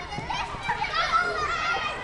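A group of young children laughing and calling out at once, many high voices overlapping: a stock children-laughing sound effect.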